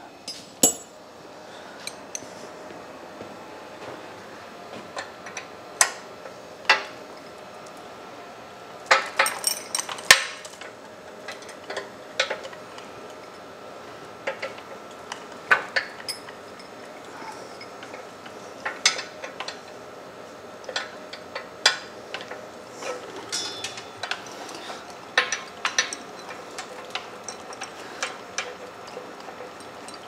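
Irregular metallic clinks and knocks of hand tools on the steel head of a Dake press as a badly bent, square-headed pulley bolt is worked loose, with short clusters of clinks scattered through.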